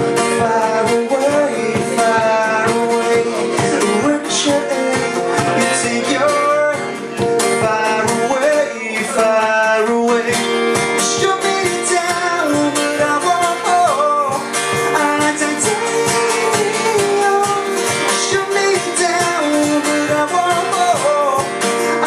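Live music from two acoustic guitars strummed in a steady rhythm, with a melody line over them.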